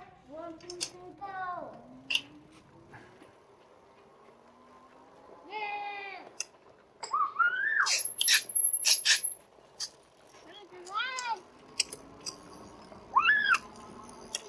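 A young child shouting and squealing in a high voice several times. Under the calls, a faint whine rises in pitch as the RadMini Step-Thru e-bike's hub motor pulls away.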